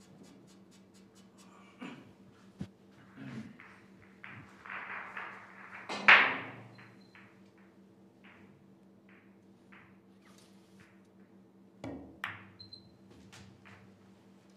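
Billiard balls and cue clicking on a pool table over a faint steady hum. About twelve seconds in comes a cluster of sharp clicks as a shot is played. A single louder knock with a short ringing tail comes about six seconds in.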